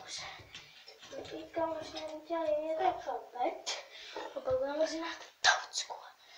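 A child's voice talking.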